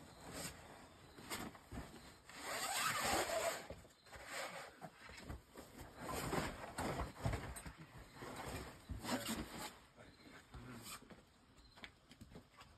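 A climber's shoes and hands scuffing and rubbing on the rock of an overhanging boulder as he moves between holds: irregular rasping scrapes, one every second or two.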